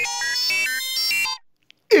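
Samsung split air conditioner playing its electronic power-on melody as it is switched on by remote: a quick run of short beeping notes stepping up and down, stopping about one and a half seconds in.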